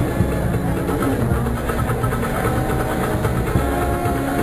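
Processional band music playing long held notes over a dense low rumble.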